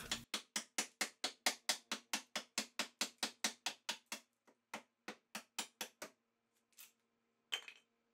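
A bronze hatchet chopping into a clamped pine board: quick, even strikes about five a second that thin out and stop about six seconds in. One or two lone knocks follow near the end.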